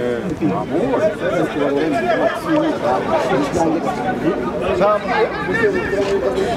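Several voices talking over one another in continuous chatter.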